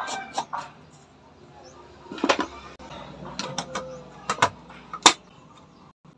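Small clicks and scrapes of a light bulb being screwed into a plastic lamp receptacle: a quick run of clicks at first, then scattered single clicks, the sharpest about five seconds in.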